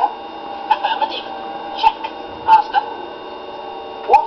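Steady electronic hum of the TARDIS console room, as heard through a television's speaker, with a few short sounds at about one, two and two and a half seconds in.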